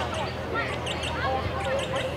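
Indistinct voices of spectators and players talking over one another, with a steady low hum underneath.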